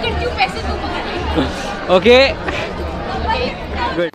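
Several people talking over one another in lively chatter, with a sharp burst of laughter or exclamation about two seconds in. A low regular beat, about two a second, runs underneath.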